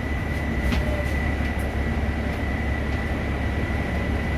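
Transit bus cabin noise: a steady low engine and road rumble under a thin, constant high whine, with a few faint clicks and rattles.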